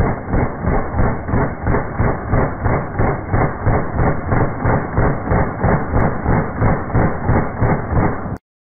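Handgun in a carbine-conversion chassis firing rapid, evenly spaced shots, about three a second, without a pause.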